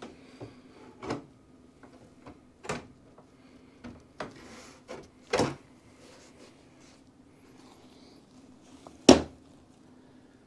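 Knocks and clatter of a retractable soft top's metal frame being set and pressed onto a truck cab roof: about half a dozen separate knocks, the loudest near the end.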